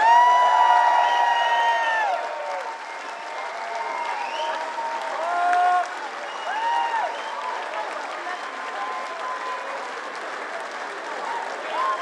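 Concert audience applauding and cheering, with a long whoop at the start, the loudest moment, and shorter whoops scattered through; the applause eases a little after the first couple of seconds.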